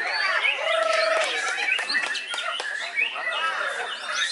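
White-rumped shama singing: a fast run of varied whistled notes, pitch glides and sharp chips, with a short held whistle about a second in.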